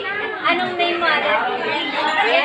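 Speech only: several women chattering and talking over one another in a large dining room.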